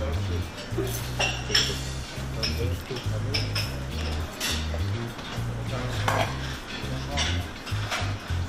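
Spoons and serving tongs clinking against china bowls and dishes at a breakfast buffet, several separate clinks. Background music with a deep bass line plays under them.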